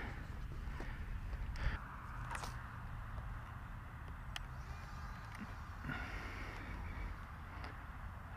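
Faint open-air ambience: low wind rumble on the microphone with a light hiss, broken by a few small clicks.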